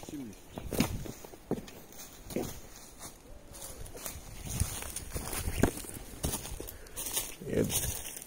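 Footsteps crunching through dry leaf litter and twigs on a forest trail, roughly one step a second.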